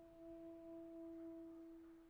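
The last note of a French horn piece lingering as a faint, pure tone after the horn stops, fading out near the end.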